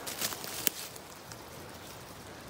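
A few sharp crackles and rustles of dry leaves and twigs underfoot on the forest floor, bunched in the first second, the loudest snap about two-thirds of a second in, over a faint steady hiss.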